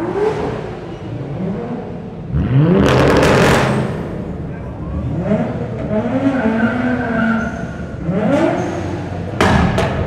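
Nissan Skyline R33 GT-R's RB26DETT twin-turbo straight-six, fitted with a Nismo R1 turbo kit and Tomei titanium exhaust, revved again and again in a road tunnel: a string of revs that climb and drop, loudest about three seconds in. Near the end come a couple of sharp exhaust bangs.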